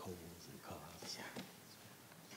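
Quiet, indistinct whispered and murmured talk among several people, picked up faintly off-microphone.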